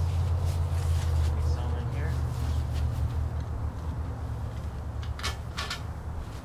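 A steady low rumble that slowly fades, with two sharp clacks about five seconds in as a red plastic gas can is handled and set down on the grass.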